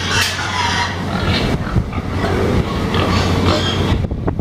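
Carcass cart clattering and scraping as it is pulled over a slatted barn floor with a dead hog on it, over a steady low hum, with scattered sharp knocks.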